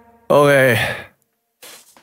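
A man's loud voiced sigh, falling in pitch and lasting under a second, just after the song's backing track dies away. A faint breath follows near the end.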